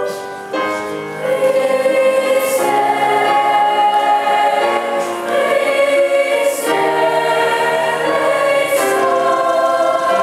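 Youth chamber choir of mixed voices singing in sustained chords. The sound thins briefly at the very start, and the full choir comes back in about half a second in. A few short hissing consonants stand out.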